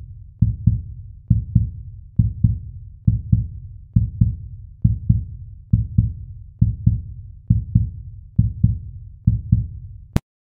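Outro backing track of low double thumps in a heartbeat rhythm, repeating steadily a little under once a second.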